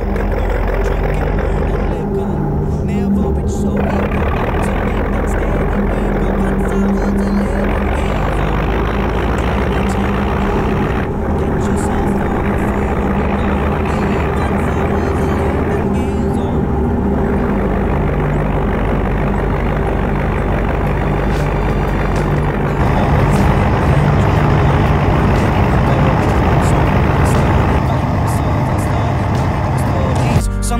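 Diesel engine of a Hudswell Clarke shunting locomotive running under load as it moves off, heard close to its exhaust from on top of the bonnet. It runs with a steady low note and grows louder about three-quarters of the way through.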